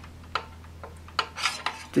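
Steel rule clicking and scraping against the apexes of thin metal-rod model roof trusses as it is laid across and rocked on them, one light click about a third of a second in and a cluster of clinks in the second half. The rule rocks because one truss stands a little high.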